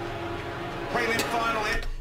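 Documentary soundtrack: background music with steady held notes, with faint voices in the second half.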